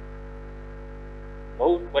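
Steady electrical mains hum in the microphone and sound system, a low buzz with evenly spaced overtones that holds level through a pause in the speech.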